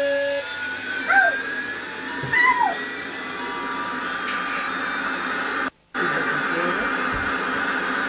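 Battery-operated toy airliner playing its jet-engine sound effect: a whine that rises in pitch, then a steady hissing rush. The sound cuts out briefly about six seconds in.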